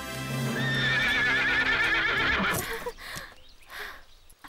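A horse whinnying: one long warbling neigh, starting about half a second in and lasting about two seconds, over background music that fades out after it.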